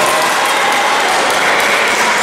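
Spectators clapping, with crowd voices mixed in, in a large sports hall.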